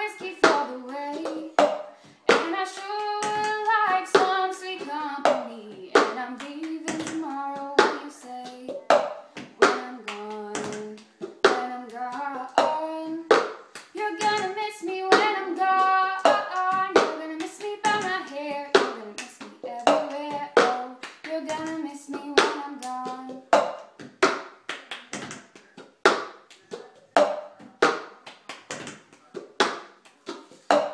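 Cup-song rhythm: hand claps and a cup tapped, lifted and set down on a tabletop in a repeating pattern. A female voice sings a melody over it for most of the time, then drops out for the last several seconds, leaving the cup-and-clap rhythm alone.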